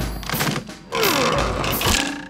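Cartoon sound effect of a wooden floorboard being wrenched up out of a floor, noisy wood scraping with a falling creak about a second in.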